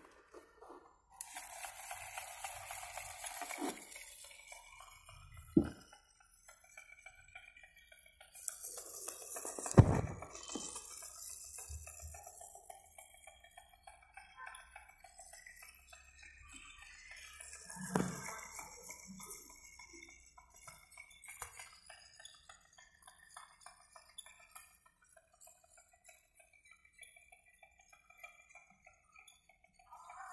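A toy RC car's electric motors and gearing running in a few short spells with clatter. A sharp knock about ten seconds in is the loudest sound, and fainter clicks and rattles come between the spells.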